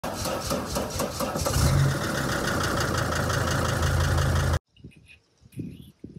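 T1N Sprinter van engine cranking rapidly and rhythmically, catching about a second and a half in and then running steadily with a strong low note, until it cuts off suddenly near the end.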